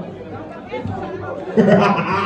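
Speech only: crowd chatter, then one voice speaking louder near the end.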